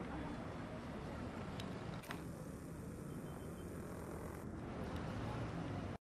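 Steady low rumble of outdoor city background noise, with a sharp click about two seconds in.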